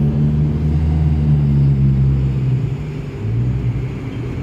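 A motor vehicle's engine running close by on the street, a loud low steady hum that fades away after about three seconds.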